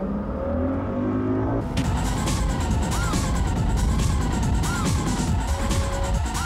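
A short electronic sting of rising tones. About two seconds in it gives way to a ski boat's engine running at speed with rushing water, and a warbling electronic tone rises and falls over it.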